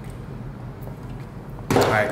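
A man drinking from a soda can, swallowing quietly, then a sudden loud, rough vocal exhalation near the end as he lowers the can.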